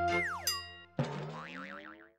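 Station logo jingle: a held synth chord with a quick downward pitch swoop, then about a second in a sudden hit followed by a slowly rising chord and a wobbling high tone that fades away.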